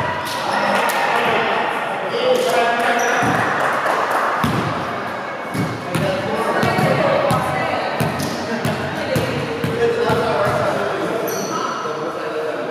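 Volleyballs being struck and bouncing on a wooden gym floor, irregular sharp thuds, over players' voices and calls echoing in a large gymnasium.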